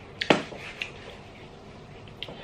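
A person's mouth while eating a very sour pickled star gooseberry: a few short wet clicks and one louder smack early on, then quiet chewing.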